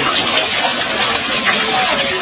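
Thin streams of water pouring from a bamboo wishing well into its pool, a steady splashing rush.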